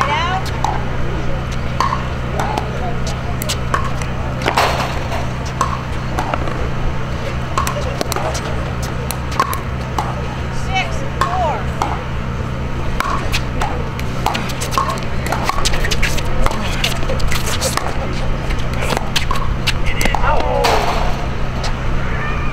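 Short, sharp hollow pocks of a plastic pickleball hit by paddles and bouncing on the hard court, coming irregularly throughout, over a steady low hum and scattered spectators' voices.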